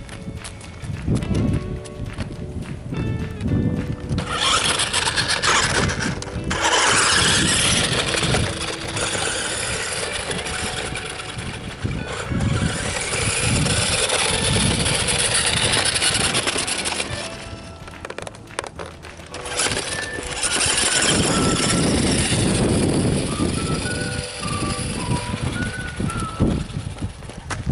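Background music over the noise of a remote-control toy ATV driving across gravelly dirt. The driving noise is a loud rushing sound that comes in two long stretches, the second one near the end.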